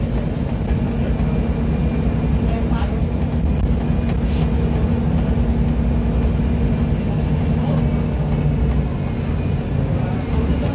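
Mercedes-Benz O-500U Bluetec 5 city bus diesel engine running at a steady speed, with a low, even drone that neither rises nor falls.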